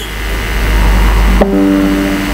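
A steady low rumble, then about one and a half seconds in a single musical note starts and holds, ringing with several tones at once.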